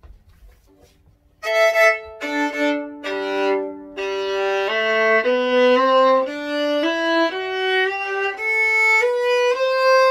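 A cheap $100 violin bowed with a carbon-fibre bow, starting about a second and a half in. It plays three two-note chords that step down across the strings, then a slow scale climbing one note at a time from the lowest string. Its tone has a slight tinniness.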